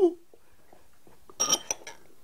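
A few light clinks of a table knife against crockery, about a second and a half in, as jam is spread on trifle sponges.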